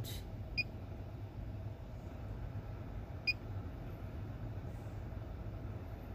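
Two short, high beeps from a handheld OBD2 code reader's built-in speaker as its keys are pressed to confirm erasing the stored trouble codes, over a steady low hum.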